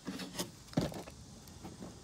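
A few short handling clicks and one heavier knock in the first second, the knock the loudest, then a low background.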